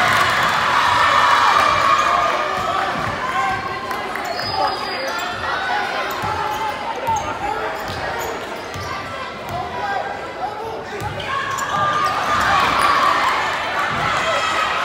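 Basketball dribbled on a hardwood gym floor, a run of short bounces, under the chatter and shouts of a crowd, all echoing in the gymnasium. The crowd noise rises towards the end.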